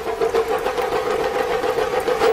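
A steady, machine-like buzz held at one pitch, with a fast fine flutter running through it.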